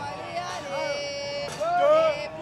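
Several people's voices shouting and calling out over one another, one voice holding a long note near the middle.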